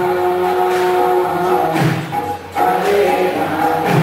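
Group devotional singing (kirtan) in long held notes, with a low thump about two seconds in and again near the end.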